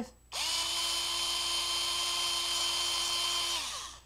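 Handheld electric drill running steadily for about three seconds, boring out the air-restrictor hole in a plastic toy-blaster plunger, then spinning down and stopping near the end.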